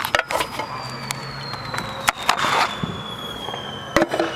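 Crackling and snapping from the lit fuse of a consumer firework cake, ending in a sharp bang as the cake fires its first shot. Underneath, a thin high tone sinks slowly in pitch.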